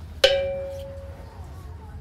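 A single bell-like metallic chime, struck once about a quarter second in and ringing out with a clear tone that fades over about a second.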